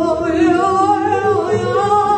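Free-jazz improvisation for saxophones and double bass: several long held horn tones, overlapping and bending slowly in pitch.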